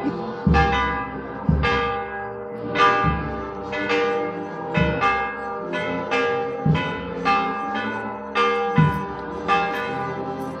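Several church bells ringing together, with irregular, overlapping strikes about one to two a second, each ringing on long after it is struck.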